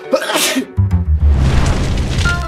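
A man sneezes once, sharply, a few tenths of a second in. Then a loud rushing noise with a deep rumble starts and carries on.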